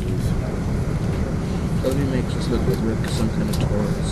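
Steady low rumble inside a moving vehicle, with faint voices in the background around the middle.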